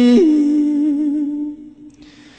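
A Buddhist monk's male voice chanting a slow, mournful Khmer lament. One long held note shifts in pitch just after the start, then fades away about three quarters of the way through, leaving a brief pause.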